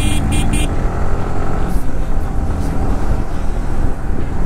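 Motorcycle engine running steadily at cruising speed, with wind and road noise from riding.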